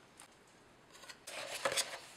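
Hot-stamping foil crinkling as it is handled by hand: a short crackly rustle starting a little after a second in and peaking just before the end.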